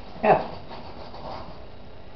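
Wooden spoon stirring a thick, crumbly mix of crushed biscuits and walnuts in chocolate inside an enamel pot, a faint steady rubbing.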